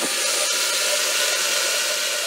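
Countertop blender running steadily at speed, blending carrots, sunflower oil and eggs into a smooth liquid.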